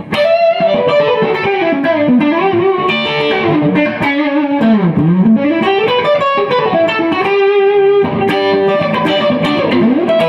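1967 Gibson ES-335 electric guitar played through a 1965 Fender Deluxe Reverb amp with a Hermida Mosferatu overdrive pedal. Fast single-note lead runs sweep down and back up, with one held note about three-quarters of the way through.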